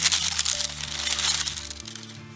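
Tissue paper crinkling and rustling as a hand rummages through it in a cardboard box, a dense crackle that fades out about a second and a half in. Background music plays underneath.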